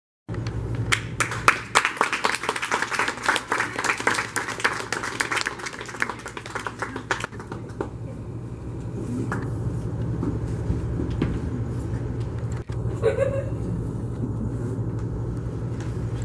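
Audience applauding for about seven seconds, the claps thinning out and stopping, followed by a steady low hum in the hall with faint murmuring.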